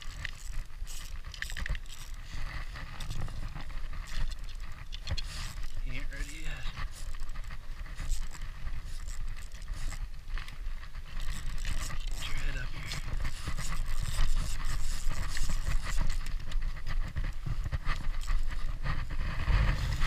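Spinning reel cranked steadily by hand while reeling in a hooked fish, under continuous rustling and rubbing of jacket fabric against the chest-mounted camera and a low wind rumble, with a couple of short vocal sounds from the angler.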